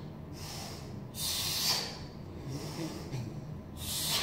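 Forceful hissing exhalations of a man working through overhead reverse lunges with kettlebells, one sharp breath out about a second in and another at the end, each marking the effort of a rep.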